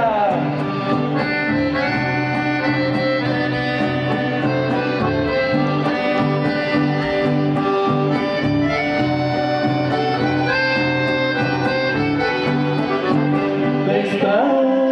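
Two button accordions and a guitar playing an instrumental passage of a chamamé, the accordions carrying the melody over a steady bass line.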